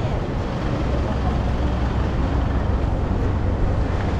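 Engine of a small Isuzu box truck running close by, a steady low hum, over the hubbub of a crowded shopping street.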